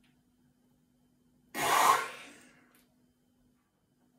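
A single sharp, loud burst of breath from a man, a forceful exhale or sneeze, about a second and a half in, fading out within about a second.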